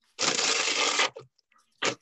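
A plastic bag crinkling for about a second as it is handled, picked up over a video call, then a short knock near the end.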